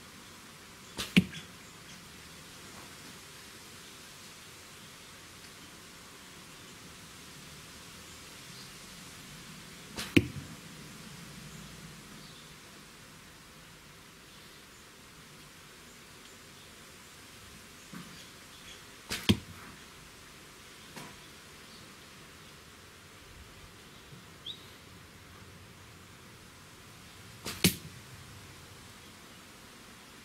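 Carbon arrows shot from a 40-pound Korean horse bow striking a foam block target: four sharp hits roughly nine seconds apart, each with a fainter sound just before it.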